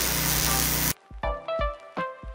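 Arc welding crackling and hissing steadily for about the first second, then cutting off suddenly, leaving background music with a beat.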